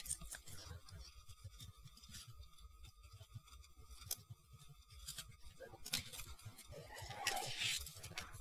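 A few faint, scattered clicks and light handling noise of plastic model-kit parts: a plastic rifle being fitted into a plastic model's hand.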